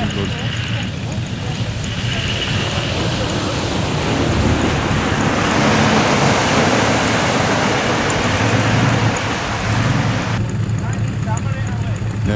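Off-road 4x4 engine running low and steady at the water's edge, under a loud rushing noise that swells in the middle and drops away sharply about ten seconds in.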